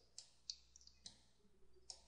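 Near silence with about four faint, short clicks spaced through it, made while drawing on a computer screen.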